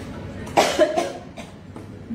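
A woman coughing twice in quick succession about half a second in, set off by dust.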